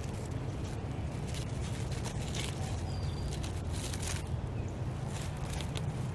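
Plastic wrap crinkling in gloved hands as it is wrapped around a section of yarn: scattered soft crinkles over a steady low background hum.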